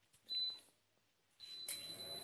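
Induction cooktop's touch controls beeping as it is switched on, a short beep about half a second in, then a steady hum with a faint high tone as the hob starts heating near the end.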